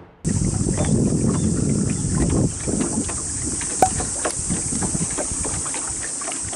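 Open-water ambience aboard a small boat: wind on the microphone and water lapping at the hull, with a steady high hiss and scattered light knocks and ticks. It cuts in abruptly a quarter second in.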